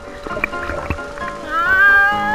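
Background music, with a woman's voice breaking in about one and a half seconds in on a high-pitched cry that rises and then holds.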